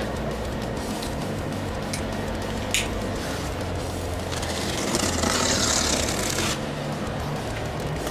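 A knife blade slicing through the packing tape on a cardboard box: a hissing scrape of about two seconds midway, after a couple of light taps, over quiet background music.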